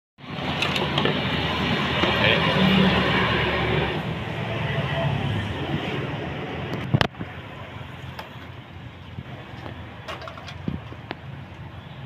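Busy outdoor background noise with indistinct voices. There is a sharp knock about seven seconds in, after which the noise is noticeably quieter.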